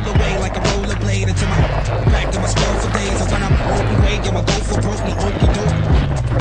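A hip-hop track with a repeating bass beat plays over the rolling and rattling of a mountain bike's tyres and frame on a dry, rocky dirt trail, with irregular sharp knocks from bumps.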